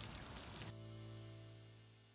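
Faint background noise, then a low, steady hum of held tones that fades out to silence near the end.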